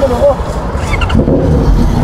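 Motorcycle engines running close by, a low pulsing rumble that grows fuller about a second in.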